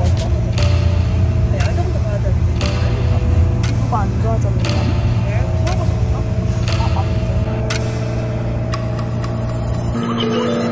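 Steady low rumble of a moving vehicle heard from inside the cabin, with light ticks about once a second.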